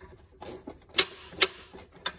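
Three sharp metallic clicks about half a second apart as a small hand tool works the little screws of a fog light mount.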